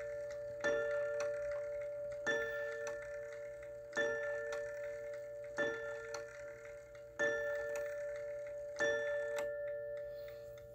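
Seth Thomas Fieldston mantel clock striking the hour, part of its eight o'clock count. Six evenly spaced strikes come about a second and a half apart, each ringing on and fading into the next.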